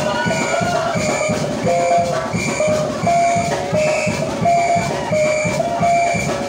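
Live band music: an electric lead guitar plays short, repeating melodic notes over a steady drum-kit beat, with a bright cymbal-like hit about twice a second.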